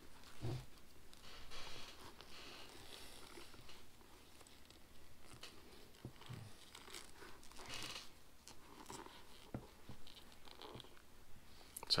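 Faint rustling and scraping of a helmet's fabric-covered cheek pad and liner being handled as a chin strap and plastic buckle are forced through it, with a few small clicks.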